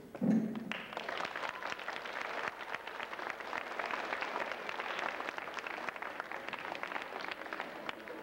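Audience applauding, the clapping starting about a second in and going on steadily.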